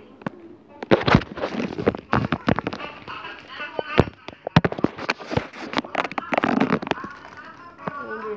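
A plastic Ziploc bag crinkling and crackling around a hand, in quick irregular snaps, with knocks from the phone being handled.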